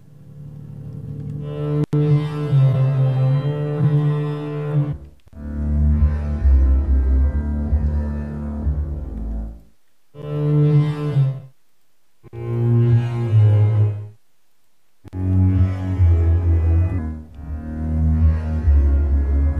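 Sampled Bazantar, a five-string acoustic bass with sympathetic strings (8Dio Kontakt library), playing deep bowed solo phrases: about six phrases of one to five seconds each, broken by short silences, on shifting low pitches.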